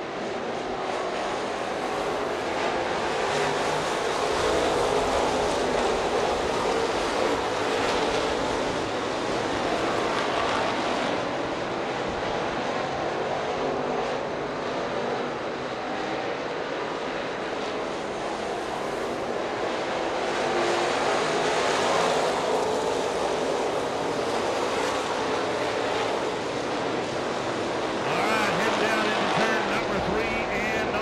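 A pack of dirt-track race cars running at speed around the dirt oval, their engines blending into one continuous drone that swells and eases as the cars come by. A voice over the PA comes in near the end.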